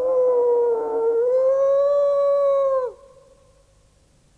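A wolf howling: one long, nearly level howl that falls away in pitch at its end, about three seconds in, leaving a faint ringing tail.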